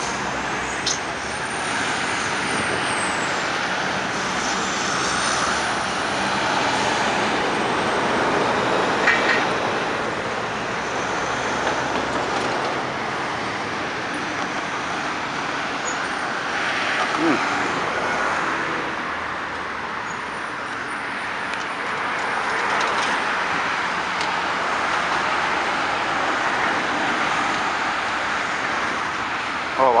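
Steady road traffic of cars and semi trucks passing through an intersection: engine and tyre noise that swells and fades as each vehicle goes by.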